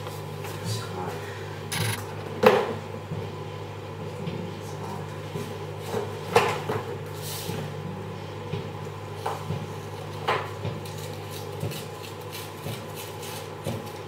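A few separate knocks and clatters of objects being handled, with a short rustle near the middle, over a steady low hum.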